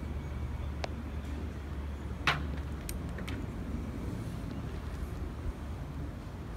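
Outdoor background: a steady low rumble with a few short sharp clicks, the loudest a little after two seconds in.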